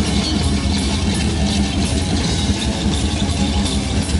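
Live hardcore punk band playing loud and steady, with electric guitar and bass guitar.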